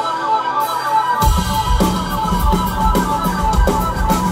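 Live rock band playing: an electric guitar riff, with drums and bass coming in about a second in.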